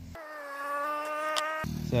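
A steady buzzing tone with a clear pitch, lasting about a second and a half and sinking slightly in pitch toward the end.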